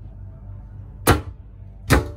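Two sharp knocks about a second apart, typical of wooden wardrobe doors in a yacht cabin being handled. A steady low hum runs underneath.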